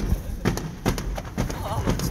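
Fireworks going off in a quick, irregular run of sharp bangs and pops, about five or six in two seconds, as a shell bursts into white-gold sparks.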